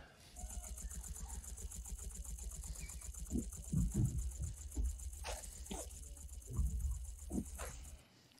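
Film battle soundtrack at low level: the fast, continuous rattle of Gatling guns firing over a low rumble, with a few louder thuds in the middle and near the end.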